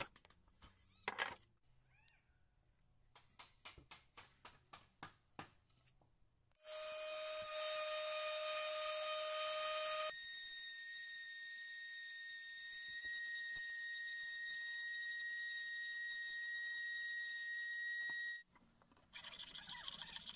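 Handheld rotary tool running with a steady high whine for about twelve seconds, its pitch jumping higher about ten seconds in, then cutting off. Before it, a few faint scraping strokes.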